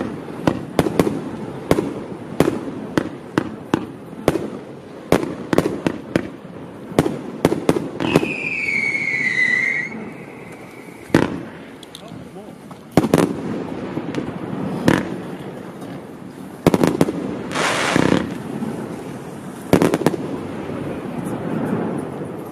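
Celtic Fireworks 'Bring It On' 65-shot firework barrage cake firing: rapid shots about two a second for the first eight seconds, then fewer, spaced loud reports. A high falling whistle sounds about eight seconds in, and a longer stretch of crackling comes near the end.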